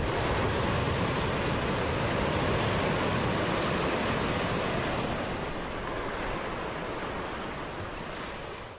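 A steady rushing noise like ocean surf, the sound effect of a TV station's logo ident, starting as the music stops and slowly fading toward the end.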